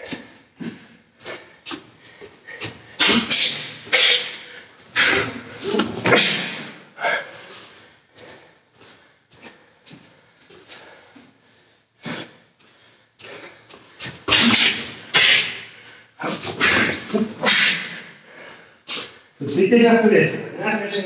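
A karateka's short, sharp, hissing exhalations and grunts in quick clusters, breathing out with each strike while shadowing combinations.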